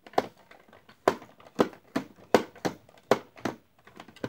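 Hollow plastic Kong action figure doing chest beating: its hard plastic fists knocking against its chest as its arms are worked, about eight sharp clacks at an uneven pace of roughly two a second.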